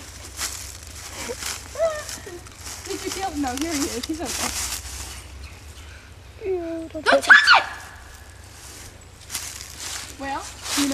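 Footsteps rustling through dry leaf litter, with laughing and wordless voices; a loud high-pitched cry or laugh about seven seconds in is the loudest sound.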